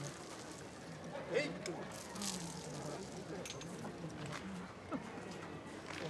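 A man's low voice intoning in long, level-pitched phrases over a faint background murmur, with a few small sharp clicks.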